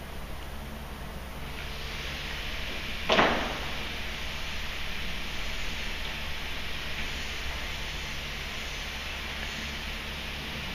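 A barbell loaded with bumper plates is set down on a lifting platform: one sharp thud about three seconds in, against a steady hiss.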